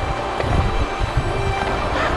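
Rushing, splashing water of a shallow river riffle as an inflatable kayak runs through it, heard close on the boat, with heavy low rumbling buffeting on the microphone.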